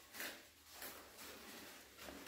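Faint handling sounds of resistance bands and their handles being lifted out of a fabric bag and sorted: a few soft rustles and swishes.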